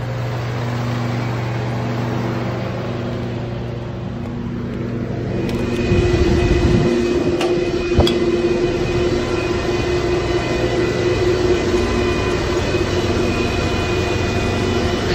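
Natural gas generator engine running with a steady low hum. About halfway through, after a knock, this gives way to the louder, higher steady whirr of air-cooled Bitcoin mining machines' fans running inside the container.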